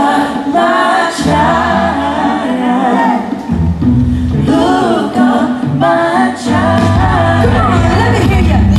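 Female lead vocalist singing live with her band, with several voices singing together. The low band parts drop out for stretches, leaving the voices nearly on their own.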